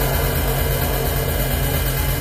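Live electronic music played on synthesizers: a loud, dense wall of droning noise over a steady low bass that pulses regularly.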